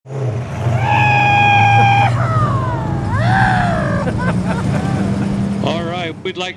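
A classic car engine runs with a steady low rumble under a loud, high, drawn-out vocal call. The call is held on one pitch for about a second, then slides down, swings up and down again, and breaks into short voice sounds near the end.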